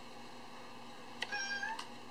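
A toy kitten gives a single short meow of about half a second, rising slightly at its end, with a click just before it starts and another as it stops.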